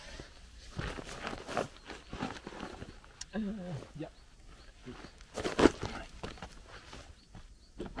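Footsteps and handling noises on dirt ground, with one sharp knock a little past halfway.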